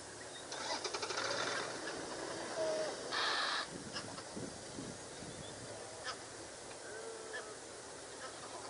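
Birds calling: a fast rattling call in the first two seconds, then a loud harsh call about three seconds in, followed by scattered short chirps.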